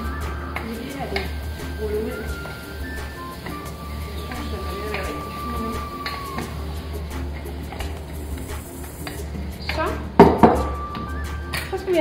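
Background music with long held notes over a low steady hum. About ten seconds in comes a loud clatter and a few knocks on the wooden worktop as the rolling pin is put down.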